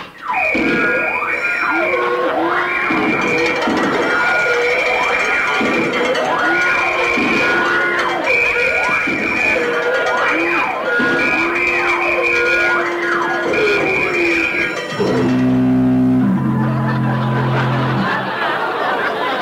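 Radio sound-effect burglar alarm going off as the safe is opened: a wailing siren-like tone sweeps down and back up over and over. Near the end it gives way to low, steady horn blasts.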